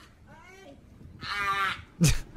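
A seal calling twice with drawn-out, pitched calls: a faint one first, then a louder one a little over a second in.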